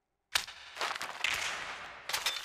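A single sharp knock after a moment of silence, followed by a faint hiss of noise.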